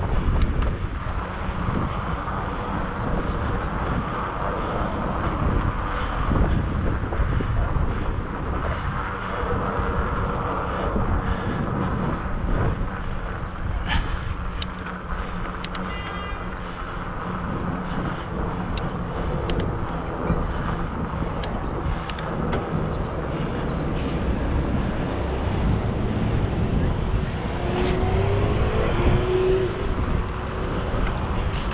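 Wind rushing over the microphone of a camera carried on a moving bicycle, with a steady low rumble of road and tyre noise and cars driving past in the next lanes. A few short clicks come about halfway through.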